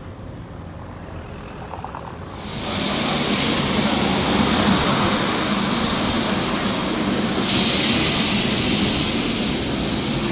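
Lisbon Remodelado tram running along street track and passing close, its wheels and running gear loud from about two and a half seconds in and growing brighter and hissier from about seven and a half seconds as it comes alongside. Before that, quieter street traffic.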